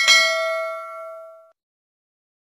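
A single bell-like ding sound effect, for the notification bell being clicked on. It rings a few clear tones together and fades away after about a second and a half.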